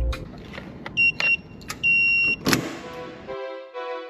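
Inside a car: scattered clicks and two short, high electronic beeps from the car, then a sudden louder rush of noise. Soft keyboard music starts near the end.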